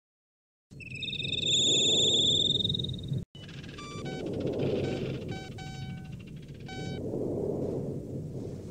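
Retro sci-fi computer sound effects over a steady low rumble. A loud high warbling tone runs for about two seconds, then a brief dropout, then clusters of short electronic beeps and chirps as terminal data appears.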